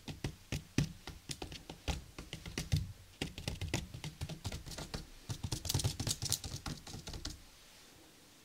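Fingers tapping rapidly and irregularly on a tabletop, like typing, stopping near the end.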